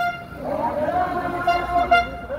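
A single-pitched horn tooting several times, with a longer blast near the end, over the voices of a street crowd.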